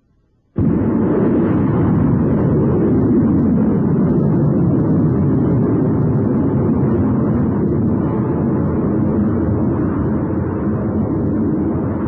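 Rocket launch: engine noise cuts in suddenly about half a second in and runs loud and steady as the rocket lifts off and climbs, easing a little near the end.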